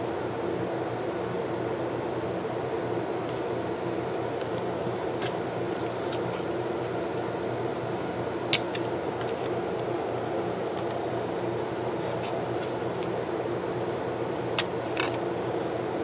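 Washi tape and stickers being handled on planner paper: soft ticks and crinkles, with two sharper clicks about halfway through and near the end. A steady background hum runs underneath.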